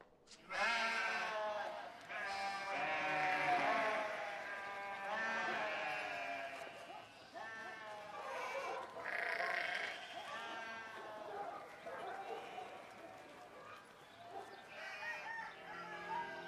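A large flock of sheep bleating, many calls overlapping one another.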